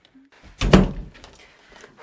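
A single heavy thump about half a second in, dying away within half a second.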